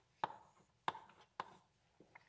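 Chalk writing on a blackboard: three sharp taps of the chalk as letters are stroked on, spaced a little over half a second apart.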